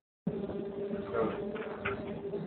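A brief dead-silent audio dropout right at the start, then a steady low electrical-sounding buzz in the room with faint, indistinct voices under it.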